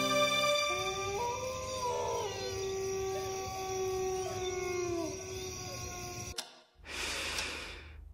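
A dog howling in long, wavering calls that rise and fall in pitch, cutting off suddenly a little after six seconds in, followed by a faint hiss.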